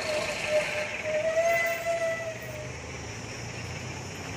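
A long, steady horn blast with a slightly wavering pitch that fades out a little past halfway, over the low hum of an engine running.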